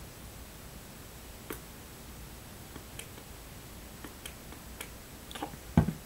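Quiet handling with a few faint, scattered clicks of a plastic trigger spray bottle being squeezed to spray cleaner onto a makeup brush, then a low thump near the end.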